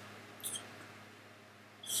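A quiet room with a brief soft high-pitched hiss about half a second in, then a man's voice starting to speak near the end.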